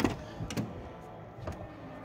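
Driver's door of a 1985 Oldsmobile Delta 88 being opened: a sharp click of the latch, then a second click about half a second later and a faint knock as the door swings open.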